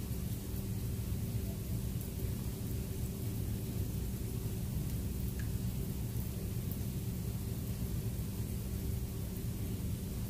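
Heavy rain outside heard from indoors as a steady low rumble.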